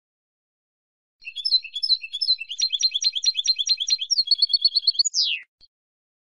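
Female European goldfinch twittering: a single phrase of quick, repeated chirping notes starting about a second in, running into a fast even trill and ending on one steeply falling note.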